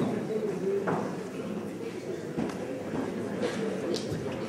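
Indistinct murmur of several voices in a large hall, with a few faint knocks.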